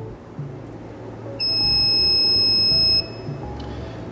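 The SUMAKE EAA-CTDS torque display's buzzer gives one steady, high-pitched beep of about a second and a half, then cuts off sharply. The beep goes as the EC button is pressed to confirm and exit setting mode.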